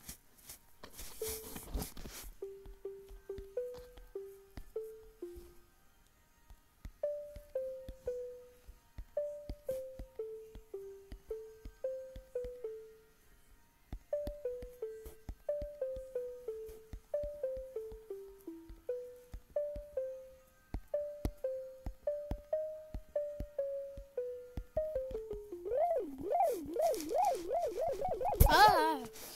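Pure, simple tones from Chrome Music Lab's Sound Waves on-screen keyboard, one note at a time in a wandering tune of about two notes a second, with two short pauses. Over the last few seconds the pitch wobbles quickly up and down.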